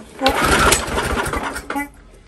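A Briggs & Stratton lawn mower engine cranked by one pull of its recoil starter. It turns over for about a second and a half with a low rhythmic beat and does not keep running.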